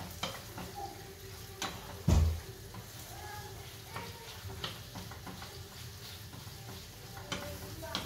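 Small pieces of chicken breast and onion sizzling in a frying pan while a wooden spoon stirs them, scraping and tapping against the pan. There is one louder knock about two seconds in.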